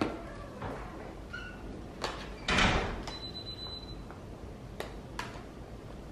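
A plastic sippy cup set down on a high chair tray with a knock, then scattered household knocks and clicks, the loudest a short scrape about two and a half seconds in.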